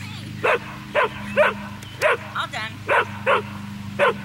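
A dog barking in a run of about eight sharp barks, roughly two a second. It is frustrated demand barking at being left out of the treats.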